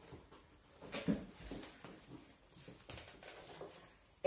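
Faint rustling and a few light knocks of a black suede ankle boot being pulled off and handled.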